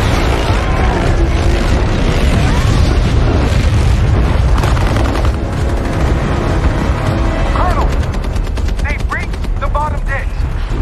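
Action-film battle sound mix: a heavy low rumble with booms, and rapid automatic gunfire in the last two or three seconds, over which short shrill cries rise and fall.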